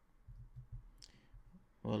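A few faint, soft clicks and taps from a computer keyboard and mouse. A voice starts near the end.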